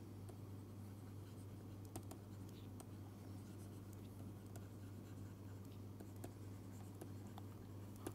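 Faint scattered ticks and scratches of a stylus writing on a tablet screen, over a steady low electrical hum.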